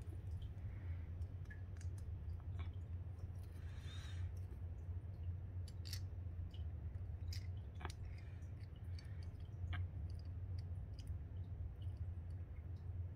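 Small metal and plastic Beyblade parts being handled and fitted together by hand: a few scattered light clicks, over a steady low hum.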